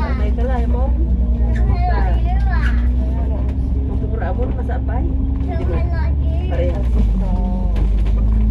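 Alexander Dennis Enviro500 MMC double-decker bus heard from inside the upper deck while driving: a loud, steady low engine and drivetrain drone with a constant hum, and people talking over it.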